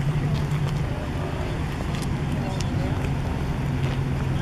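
A steady low engine-like hum, with faint voices in the background.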